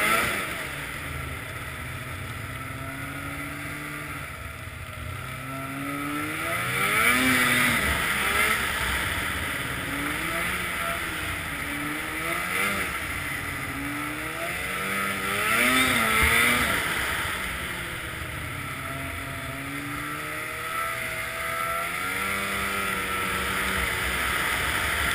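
Snowmobile engine under way, its pitch rising and falling over and over as the throttle is opened and eased off, loudest in two surges about a third and two thirds of the way through, over a steady rushing noise.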